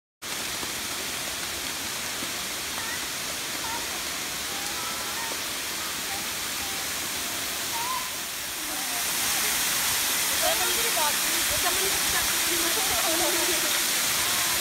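Waterfall pouring over rock ledges into a shallow pool, a steady rush of water that cuts in suddenly at the start and grows louder about nine seconds in.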